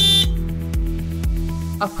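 Loadmac truck-mounted forklift's electric horn giving one short, high-pitched beep right at the start, over background music with a steady beat.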